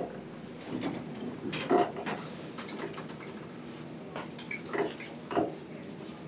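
A few scattered light knocks and clicks of defibrillator paddles and their cables being handled and set onto a training manikin's chest before a shock.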